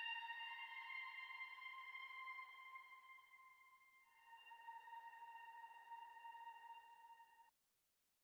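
Quiet background music of held, steady tones. The chord shifts about halfway through, then cuts off abruptly near the end, leaving silence.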